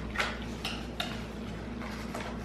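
Plastic candy-egg wrapper crinkling and tearing as it is peeled open by hand, with a few sharp crackles in the first second.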